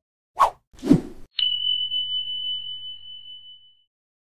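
Outro sound effect: two quick swishes, then a sharp hit about one and a half seconds in that leaves a single high, steady ring, fading out near the end.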